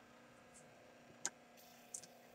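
Near silence: faint room tone, broken by one short sharp click a little over a second in and a fainter click near the end.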